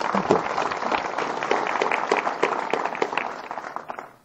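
Audience applauding: many hands clapping together, fading away near the end.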